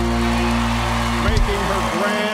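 A live band holding its final chord, which cuts off just before the end, with crowd applause and cheering underneath.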